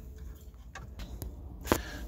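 Plastic dashboard trim and a plastic pry tool giving a few light clicks and taps as the centre bezel is worked loose, with a sharper click near the end.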